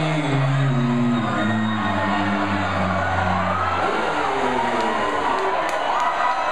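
Live rock band playing held notes that step downward, with a crowd cheering over them. About four seconds in the music stops, and the crowd's cheering and shouting carry on.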